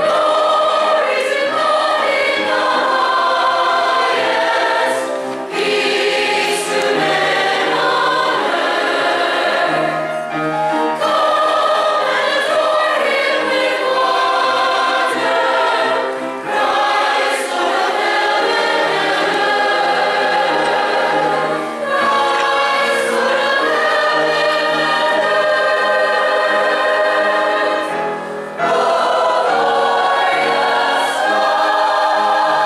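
Combined church choir of young and older voices singing together, in phrases broken by brief pauses for breath about every five to six seconds.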